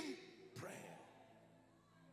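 One short spoken word from a man, then near silence with faint held keyboard notes in the background.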